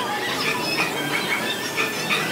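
Many short, high squealing chirps, rising and falling in quick succession, over background music.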